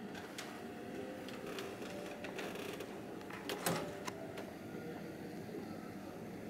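Quiet stage room tone with a few soft, scattered knocks and rustles. The loudest comes about three and a half seconds in.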